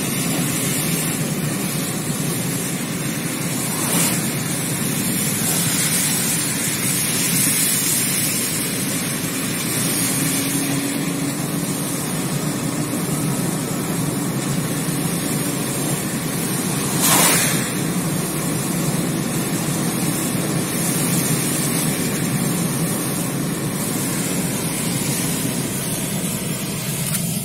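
Steady road noise inside a moving car: engine and tyres running evenly. There is a short thump about four seconds in and a louder one at about seventeen seconds.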